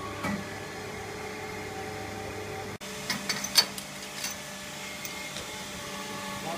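Steady hum of a running Codatto MBY 2214 panel bender. About three seconds in the sound cuts, and a quick run of sharp metallic clicks and knocks follows, the loudest just past halfway.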